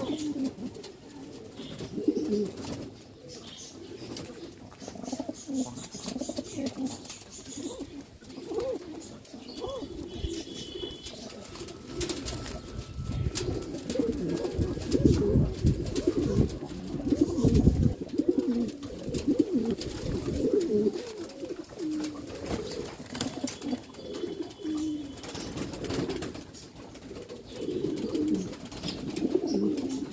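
Several fancy pigeons cooing continuously, many overlapping low coos from different birds. A low rumble rises under the cooing for a few seconds past the middle.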